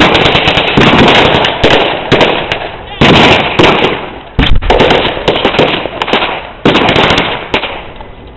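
Loud battle re-enactment gunfire and pyrotechnics: rapid crackling shots, with several sudden heavy bangs through it, about three seconds in, near the middle and near seven seconds.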